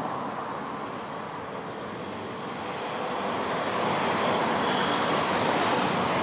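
Street traffic noise: a steady wash of passing cars and scooters that grows louder about halfway through.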